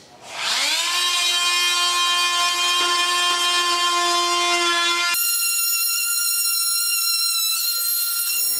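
Corded oscillating multi-tool starting up with a quick rising whine, then running at a steady high-pitched whine as it cuts into the floorboards. About five seconds in, the tone changes abruptly to a thinner, higher whine.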